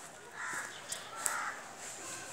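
A bird calling twice outdoors, two short separate calls about three-quarters of a second apart, over a faint steady high hiss.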